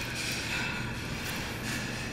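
Steady indoor background noise with a low hum and a faint high tone, with no distinct events.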